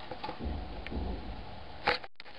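Handling noise from plastic soda bottles being moved: a low rumble through the middle and one sharp click near the end.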